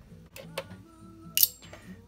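Small steel screws dropped into a metal parts dish: a sharp metallic clink with a brief high ring about one and a half seconds in, after a couple of lighter clicks.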